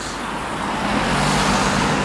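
Road traffic passing close by: tyre and road noise that swells through the middle, with a low steady engine hum joining about a second in.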